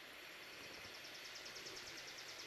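Faint insect trill: a high, even run of rapid pulses, about ten a second, starting about half a second in, over quiet outdoor background noise.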